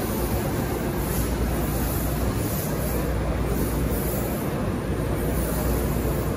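Steady hall background noise: a continuous low rumble under an even wash of indistinct din, with no single sound standing out.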